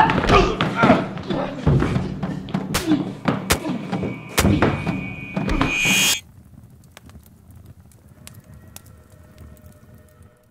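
Staged fist-fight sound effects: a rapid run of punch and body-impact thuds mixed with grunts and shouts, which cut off abruptly about six seconds in. After that comes a faint stretch of scattered crackles and a few soft held tones.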